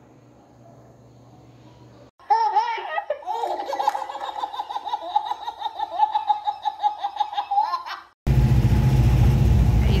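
Faint room tone for about two seconds, then high-pitched giggling laughter like a baby's for about six seconds. Then an abrupt change to the loud, steady running of the Volkswagen Kombi's engine, heard from inside the van.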